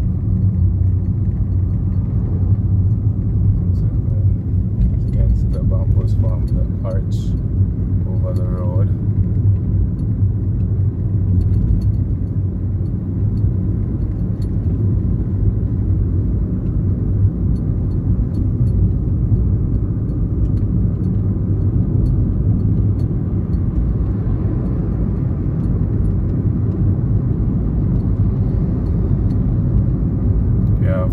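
Steady low rumble of a car driving along a paved road, engine and tyre noise. Brief faint voices are heard about five and eight seconds in.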